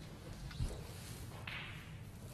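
Quiet hall background with a soft thud about half a second in and a brief swish about a second and a half in, from the snooker referee's footsteps and movements around the table.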